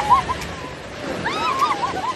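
Sea water washing, with a string of short, high, rising-and-falling calls right at the start and again from just past a second in.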